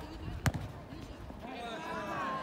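A soccer ball kicked once, a sharp thud about half a second in, with players' calls and shouts starting near the end.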